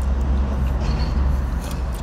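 Steady low rumble inside a car's cabin, typical of the parked car's engine idling.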